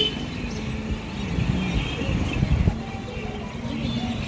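Low, steady road-traffic rumble with faint music playing over it.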